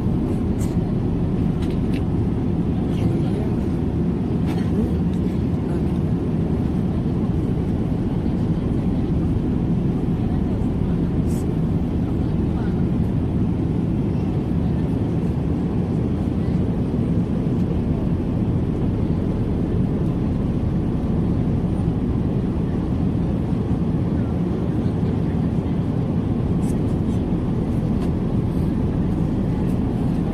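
Steady low rumble and hiss of a passenger airliner's cabin, unchanging throughout, with a few faint clicks.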